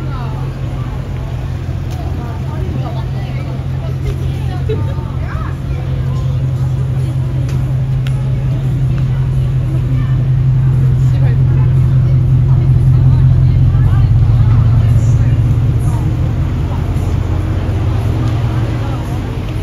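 Street ambience: a loud, steady low hum of idling cars, swelling about ten seconds in and easing near the end, with passersby talking over it.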